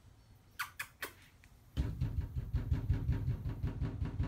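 Attention-getting noises made at a puppy: a few short, high squeaks a little after the start, then a loud rapid rattling buzz of about ten pulses a second that starts near the halfway point and keeps going.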